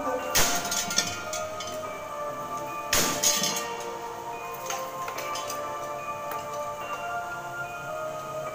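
Sundanese gamelan music with sustained metallic ringing tones, broken by two loud clashing metal crashes about half a second in and at three seconds, each followed by smaller clinks. The crashes are the kind of kecrek (struck metal plates) accents that mark a wayang golek puppet's blows in a fight.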